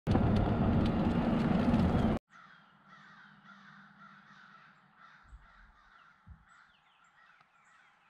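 A loud, dense rush of noise fills about the first two seconds and cuts off abruptly. After it, a group of crows caws faintly and repeatedly.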